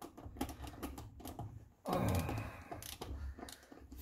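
Irregular metallic clicks and clinks of a ratchet with a universal socket on an extension being worked onto a wheel's lug nut.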